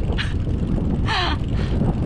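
Wind rumbling on an action-camera microphone while cycling, with a short, harsh cry about a second in.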